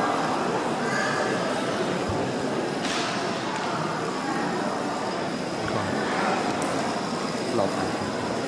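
Indistinct voices echoing in a large hall over a steady clattering haze of toppling dominoes.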